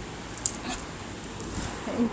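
Hot oil in a black iron kadai on a wood-fired clay chulha, smoking with a low hiss and a few sharp crackles about half a second in, as the tempering splutters before the potatoes go in.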